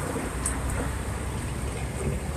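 Steady low rumble of street traffic and vehicle engines, with a faint click about half a second in.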